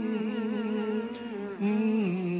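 A man's voice humming a slow hymn tune in the style of a deacon's lined, long-meter hymn, holding a long note that wavers in pitch, then moving to a lower note at the end.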